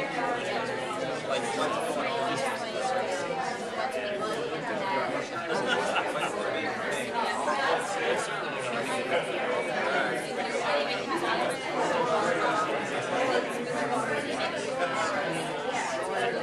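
Chatter of many people talking at once in small groups in a large room, the voices overlapping into a steady murmur with no single speaker standing out.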